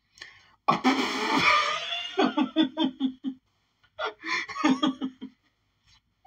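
A man laughing hard in two bouts. The first starts breathy and breaks into a quick run of short 'ha' pulses, and a second burst follows about four seconds in.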